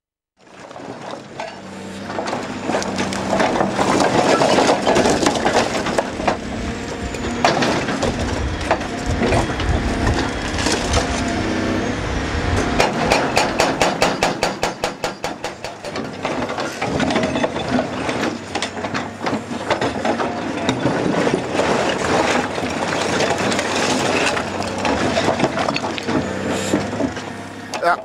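Indeco MES 8500 hydraulic breaker on an excavator hammering blue stone ledge rock, a rapid, even run of blows most distinct in the middle, over the excavator's steady diesel engine. The sound fades in from silence at the start.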